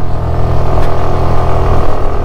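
Suzuki Access 125 scooter's single-cylinder engine running steadily under light throttle while the scooter rides at low speed, heard from the rider's seat.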